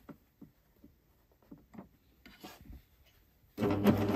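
Soft rubbing and small clicks as fabric is handled and fed under the presser foot, then about three and a half seconds in a Husqvarna Viking Amber Air S|600 coverstitch machine starts sewing with a steady running hum.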